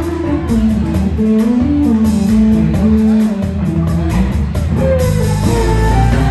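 Live band playing: an electric guitar carries a moving melodic line over electric bass and a drum kit, with steady cymbal strokes keeping the beat.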